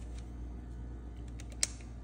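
Handheld digital multimeter being picked up and handled, with faint ticks and one sharp click about one and a half seconds in, over a steady low hum.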